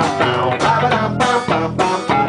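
Live electric and acoustic guitars strumming chords in a steady rhythm.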